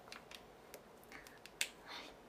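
A few small, sharp clicks and taps from a small object being handled in the hands, the loudest about one and a half seconds in.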